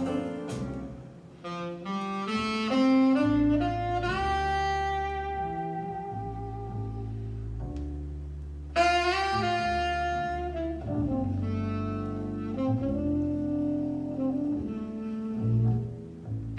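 Recorded jazz played back over a pair of Trenner & Friedl stand-mounted loudspeakers: a saxophone playing long held notes over a walking double bass. A louder, sharper phrase enters about nine seconds in.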